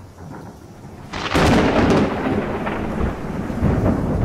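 Recorded thunder on the soundtrack: a loud crash about a second in, then a long rolling rumble that swells again near the end.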